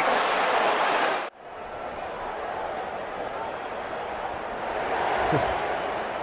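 Stadium crowd noise from a football match. A loud crowd roar cuts off abruptly just over a second in at an edit, and a quieter, steady crowd murmur follows.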